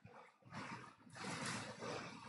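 Faint room tone with microphone hiss. It dips briefly at the start and otherwise holds steady, with no distinct event.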